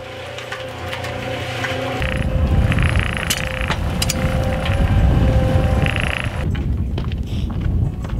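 Small Ryobi electric cement mixer running with a steady motor hum, its drum turning a wet mix of dirt, straw and water for cob. From about two seconds in, a low rumble of wind on the microphone joins it, and the hum stops suddenly about a second and a half before the end.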